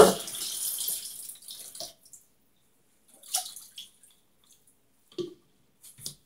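Tap water running into a sink, dying away within the first two seconds. After that it is mostly quiet, with a few faint knocks.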